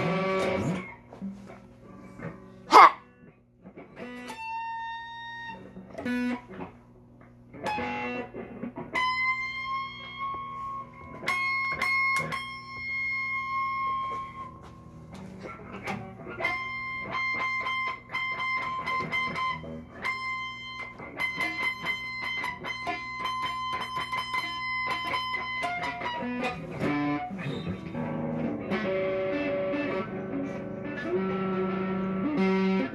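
Amplified electric guitar played in slow single notes, mostly high-pitched, some held and some picked in quick repeats, over a steady low amplifier hum. A sharp pop about three seconds in is the loudest sound.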